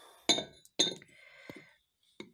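Cut-glass dishware clinking as it is handled: two sharp clinks about half a second apart, each with a brief high ring, then a lighter tap.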